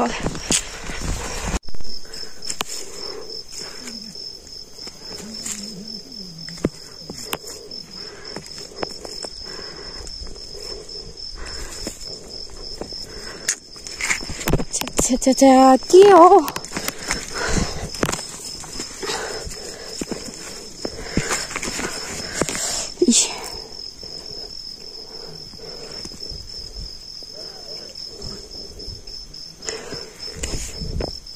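Insects chirring on one steady high note with a fine, rapid pulse, starting a couple of seconds in and briefly breaking off near the middle and again about two-thirds of the way through. Footsteps and handling knocks sound over it, with a short vocal sound around the middle.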